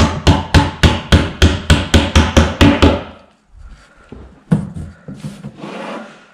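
Claw hammer tapping plastic screws into an IKEA Malm drawer's back and side panels, a quick run of about five blows a second that stops about three seconds in. Softer rubbing and knocks of the boards being handled follow near the end.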